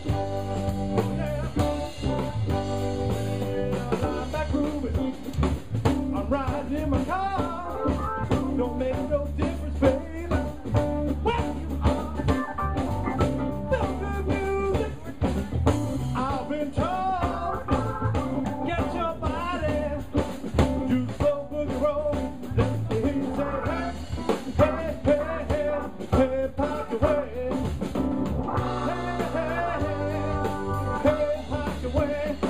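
Live funk band playing a New Orleans second-line groove: drum kit and electric bass keeping a steady beat under keyboard and guitar. A lead line bends up and down in pitch through the middle of the stretch, with no lyrics sung.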